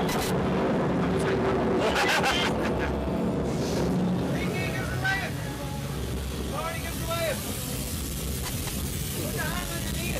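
Rushing air and rumble on the seat-mounted camera's microphone as a slingshot reverse-bungee ride launches, setting in suddenly at the start. The two riders' shouts rise and fall over it a few times.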